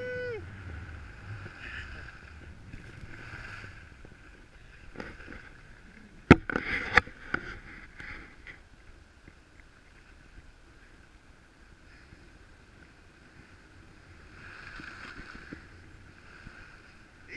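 Skis sliding and scraping over snow on a downhill run, heard as a hiss that swells and fades. A single sharp knock comes about six seconds in, with a couple of smaller clacks just after.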